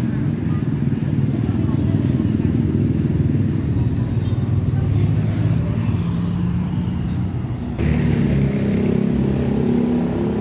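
Street traffic: motor scooters and cars passing with a steady low rumble. About eight seconds in the sound changes suddenly, with a nearer engine and more high-pitched noise coming in.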